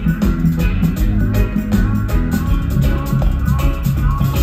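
Live reggae band playing an instrumental passage without vocals: electric guitar, bass guitar and drum kit over a large outdoor PA, heard from the crowd.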